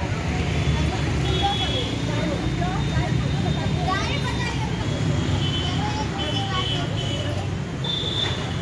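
Indistinct talk of several people close by, over a steady low rumble of background noise.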